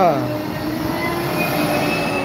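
Compact street-sweeper truck driving past close by, its engine giving a steady mechanical hum with a faint high whine near the end.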